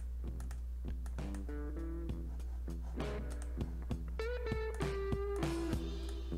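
Guitar playing a phrase of single plucked notes, with one note bent up and held about four seconds in, over a steady low electrical hum.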